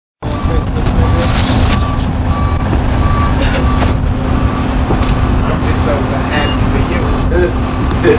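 Interior of a 1993 Orion V transit bus with its Detroit Diesel 6V92 two-stroke V6 diesel running, a steady low drone and rumble through the cabin. A short beep repeats about twice a second through the first half, over passengers' voices in the background.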